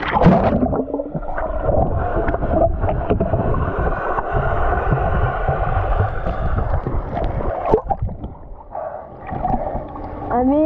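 Action camera plunging into a swimming pool with a splash, then a muffled underwater rumble and gurgle of moving water while it is submerged. The noise drops away about eight seconds in as the camera comes back up.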